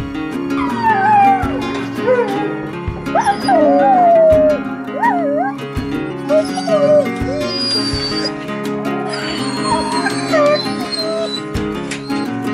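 Alaskan malamutes howling in a run of short, wavering calls that slide up and down in pitch, over background guitar music.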